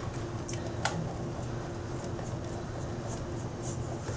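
Block of cheese being grated on a metal box grater into a stainless steel bowl: a soft, quiet rasping, with a few light ticks of metal, over a steady low hum.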